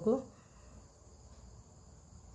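Quiet background with a faint, steady high-pitched whine or chirring, after the end of a spoken word.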